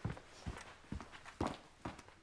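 Brisk footsteps, five steps about half a second apart.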